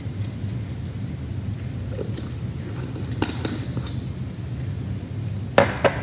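Seasoning being shaken from a plastic spice shaker over a raw chicken in a glass baking dish: a few light, brief rattles and clicks over a steady low room hum.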